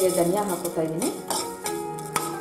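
Coriander seeds poured from a plastic cup into a dry pan, landing as scattered small ticks and rattles, over background music.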